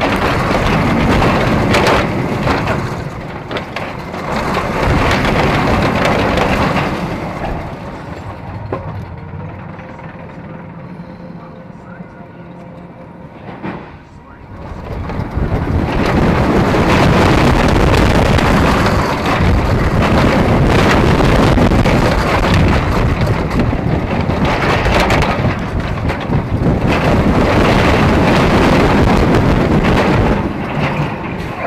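Inverted steel roller coaster train running on its track, with the roar of its wheels and rushing wind on the mounted camera. The sound eases off for several seconds in the middle, then surges back loud about fifteen seconds in as the train picks up speed and stays loud.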